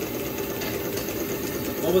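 Model two-cylinder undertype steam engine running at speed and driving a small DC dynamo: a steady, rapid mechanical clatter with a faint steady hum under it.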